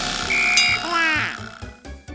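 Cartoon pouring sound effects over a children's music backing with a steady drum beat: a splashy whoosh, a short steady beep, then a quick run of gliding, gurgling tones as paint pours from a pipe into the wagon.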